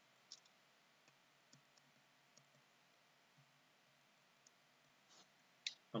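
Near silence with scattered faint ticks from a ballpoint pen writing on paper.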